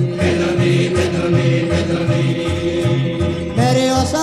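Malay choir song played from a 1975 vinyl LP: the voices hold one long sung note over a bass line pulsing about twice a second and light percussion, and a new sung phrase begins near the end.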